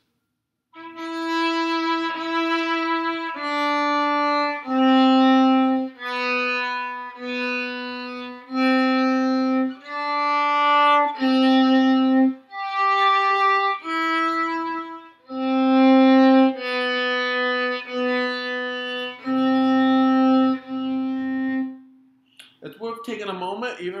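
Violin played slowly with the bow, a sight-reading line of about sixteen single held notes on the D and G strings, each lasting about a second, with a brief gap between notes.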